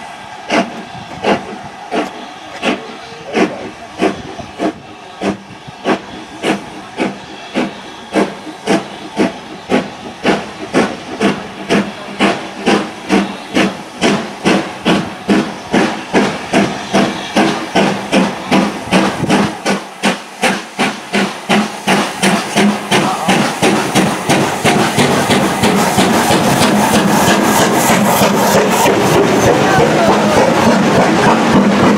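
Exhaust beats of the LMS Black 5 two-cylinder 4-6-0 steam locomotive 45379 as it pulls away with a train. The beats quicken from about one and a half a second to three or more as it picks up speed. They grow louder as it comes nearer, until near the end they merge into a loud, continuous steam hiss as the chimney passes close beneath.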